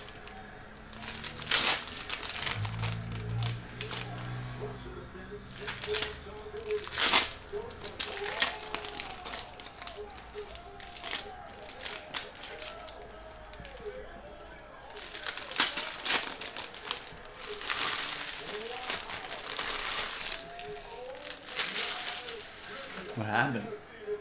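Foil trading-card pack wrappers crinkling and tearing as they are opened by hand, in a run of short, sharp crackles.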